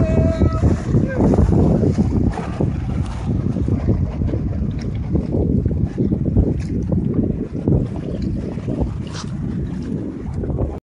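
Gusty wind buffeting the microphone on a sailboat under way in a 15 to 20 mph breeze, an uneven low rumble that rises and falls, with water rushing along the hull beneath it. A brief pitched call sounds right at the start.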